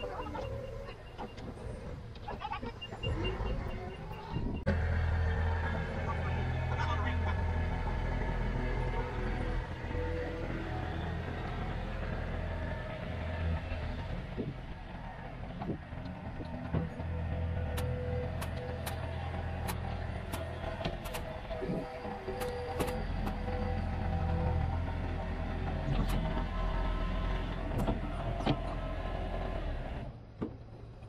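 Engine running steadily in a low drone, with a reverse-warning alarm beeping rapidly in the first few seconds, typical of a forklift backing away. Scattered light clicks and knocks sound in the second half.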